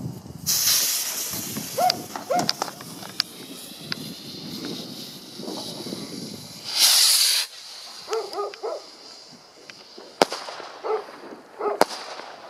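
Backyard fireworks: two loud hissing rushes of launching rockets, about half a second in and again around seven seconds, and two sharp pops from bursts in the sky near the end. A golden retriever barks on and off in between.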